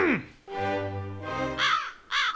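A crow cawing once near the end, after a quick falling vocal "hmm" at the start and a few held music notes.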